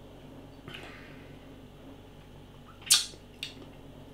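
Mouth sounds of someone tasting a beer just after a sip: a soft breath about a second in, then one sharp lip smack near three seconds, followed by a smaller click.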